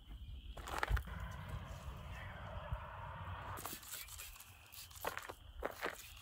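A trigger spray bottle spritzing waterless car wash onto car paint, in several short bursts near the end, among towel rubbing on the paint and footsteps on gravel.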